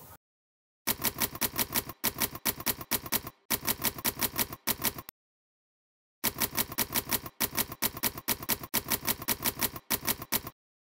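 Typewriter keys clacking in quick runs of several strokes a second, a sound effect for text being typed out. The typing starts about a second in, stops for about a second midway, then resumes.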